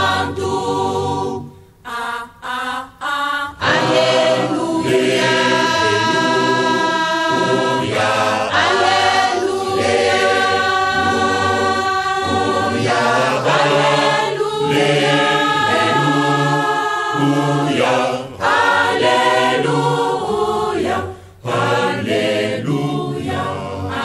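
Choir singing a Kimbanguist gospel song, with a few short breaks between phrases about two to three seconds in and a brief dip near the end.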